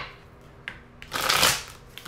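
A deck of tarot cards riffle-shuffled by hand: a fast fluttering rattle of cards lasting under a second, starting about halfway through.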